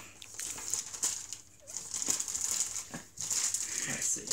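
Plastic packaging bag crinkling and rustling as it is handled and opened, in irregular bursts with two brief pauses.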